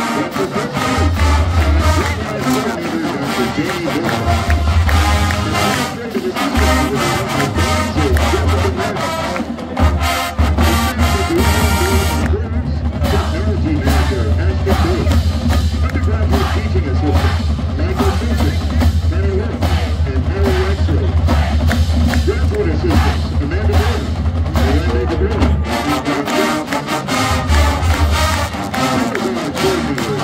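Collegiate marching band playing live: brass and sousaphones over a drumline with bass drums keeping a steady beat.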